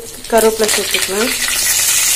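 Curry leaves and whole spice seeds sizzling in hot oil in an iron kadai, the sizzle swelling steadily louder as the leaves hit the oil. A brief voice sounds in the first second.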